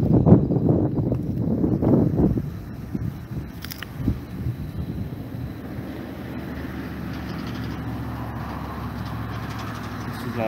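Rustling and knocking of a body-worn microphone as the wearer climbs into a police patrol car, a thud about four seconds in as the door shuts, then the steady hum of the idling patrol car heard from inside the cabin.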